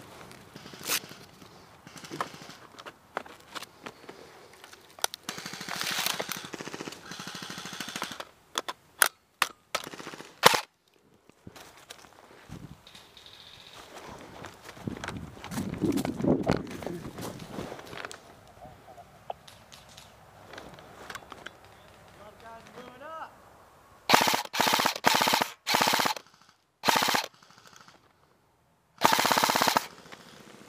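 Airsoft guns firing in woodland: a few sharp cracks about nine to ten seconds in, amid rustling through brush. Near the end come several loud bursts that start and stop abruptly.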